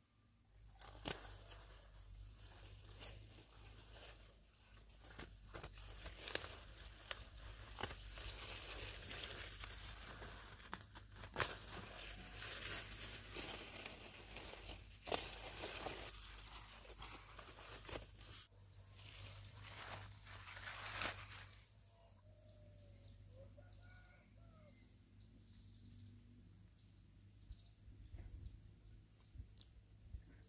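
Leafy green vegetables being picked by hand: the leaves rustle and crackle, and the stalks give sharp snaps as they are broken off. The picking stops about three quarters of the way through, leaving a quieter stretch with a few faint chirps.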